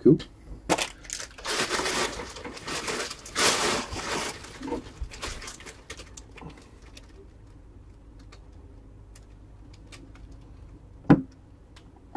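Crinkling and rustling of trading card packaging being handled for about the first five seconds, then a few light clicks and one short louder knock about eleven seconds in.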